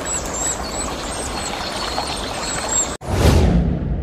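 Sound effects of an animated logo sting: a steady rushing, splashy noise with short high chirps over it. It cuts off suddenly about three seconds in, and a swoosh with a low boom follows as the logo appears.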